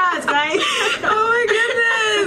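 Two women laughing, high-pitched and excited.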